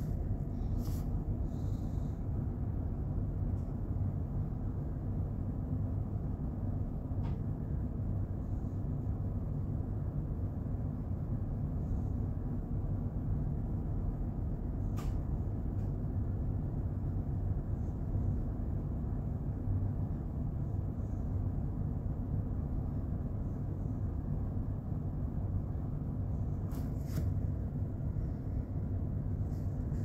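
Steady low rumble of running machinery, with a few faint clicks of metal pump parts being handled.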